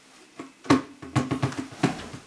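A musical instrument played live in short struck or plucked notes, starting under a second in and going on in a quick, uneven rhythm.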